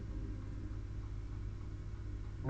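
A quiet, steady low hum with no other events.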